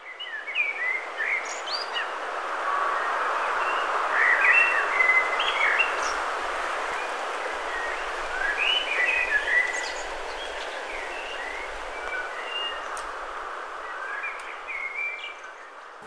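Small birds chirping and twittering, many short notes, over a steady outdoor background rush.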